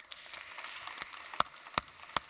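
Audience applause: an even patter of many hands clapping, with a few louder single claps close to the microphone in the middle.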